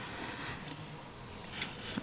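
Faint, steady noise of lawn-care machinery at work, heard as a low running haze.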